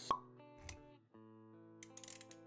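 Animated-intro sound effects over soft background music: a sharp pop about a tenth of a second in, a low thud shortly after, then held musical notes with light clicks near the end.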